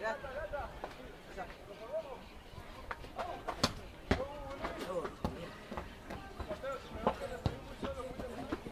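Voices calling out across the field, too indistinct to make out, with several sharp knocks or claps scattered through the middle; the loudest come about three and a half and four seconds in.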